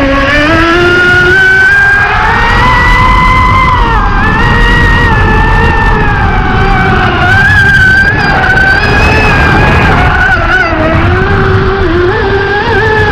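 The motor of a deep-V RC speedboat whining at high speed, its pitch rising and falling over several seconds as the throttle changes, with a steady rush of water and spray underneath.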